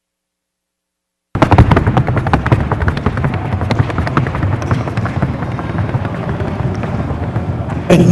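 Rapid, even hoofbeats of a Colombian Paso Fino horse in its four-beat gait on a wooden sounding board: a dense run of sharp taps that cuts in about a second and a half in.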